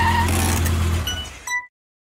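A car engine running steadily with a whine, fading after about a second, then two short metallic clinks before the sound cuts off suddenly.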